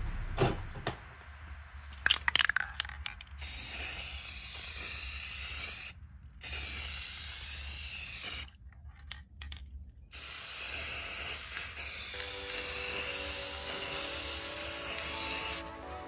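Aerosol can of triple thick clear glaze spraying in three long hisses, the last the longest, with short pauses between them. A few clicks come before the first spray.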